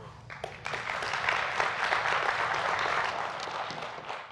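Studio audience applauding: clapping starts about a third of a second in, swells within the first second and carries on as steady applause, easing slightly near the end.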